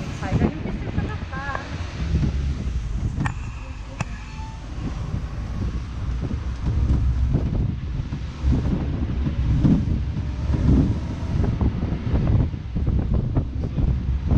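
Wind buffeting the microphone in gusts while riding in an open-sided passenger vehicle, with its running and road noise as a low rumble underneath.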